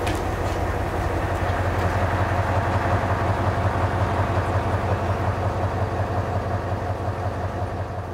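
Diesel engine of a truck-mounted crane running steadily during a lift, a low pulsing drone.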